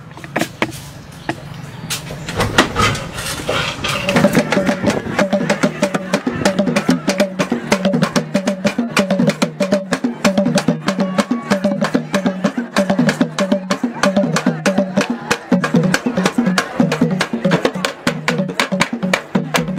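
Music with a fast, busy percussive beat, building up over the first few seconds and then carrying on steadily.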